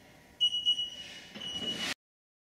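Electronic interval timer beeping a high, steady tone in two stretches with a short break, marking the end of a work interval and the start of a rest. The sound cuts off suddenly just before the end.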